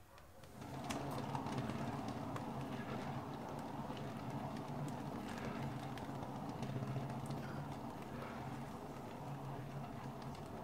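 A paint-pouring canvas spinner turning fast under a large wet canvas: a steady whirring rumble that starts about half a second in, with scattered faint ticks.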